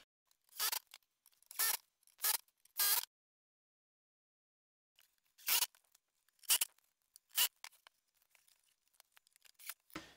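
A series of brief scraping and knocking noises from plywood console parts being handled and fitted together: four in the first three seconds, then after a silent pause three more about a second apart.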